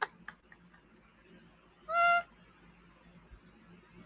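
A woman's brief, high-pitched squeak of laughter about two seconds in, otherwise laughing almost silently.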